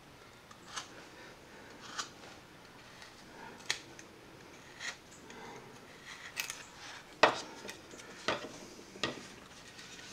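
A hand carving gouge slicing into wood: about eight short, separate cuts, spaced out unevenly, the loudest a little after seven seconds.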